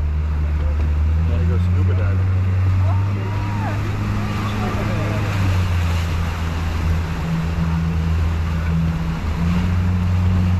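A small tour boat's engine running steadily under way, a low drone whose pitch rises slightly about a second in, with water rushing along the hull.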